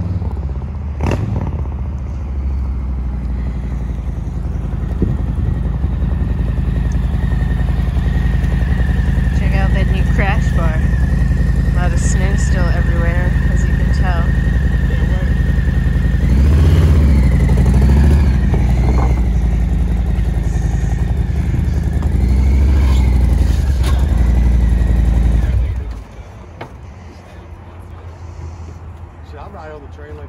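A cruiser motorcycle's V-twin engine running as the bike is ridden slowly and then onto a loading platform, with a few louder bursts of throttle in the second half. The engine cuts off suddenly about two seconds before the end.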